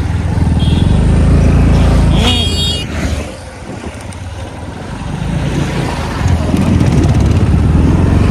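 A motorcycle engine running under way with road and wind noise. The engine note drops away for a few seconds around the middle, then rises again. A brief high-pitched tone sounds about two seconds in.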